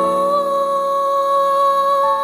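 A female voice holds one long, steady sung note over soft sustained backing music.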